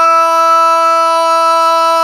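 One long note held at a single, dead-steady pitch, loud and unbroken, in a sustained vọng cổ-style melody.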